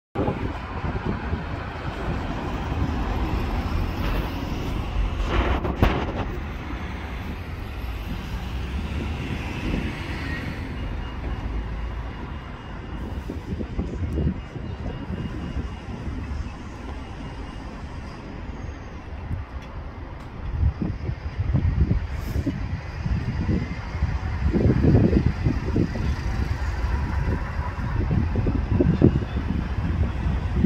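Wind buffeting the microphone over a steady low outdoor rumble. The gusts grow heavier and more frequent in the last third, with a brief sharp knock about six seconds in.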